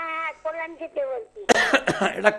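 A man coughs into his fist, a sudden loud cough about one and a half seconds in. Before it a voice speaks with a thin, narrow sound, like a caller heard over a phone line.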